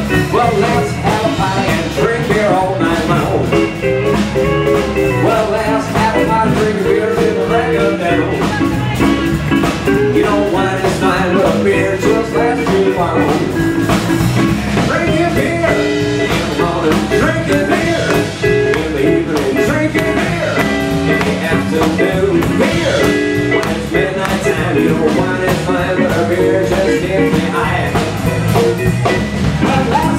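Live blues band playing with guitars and a drum kit, loud and without a break.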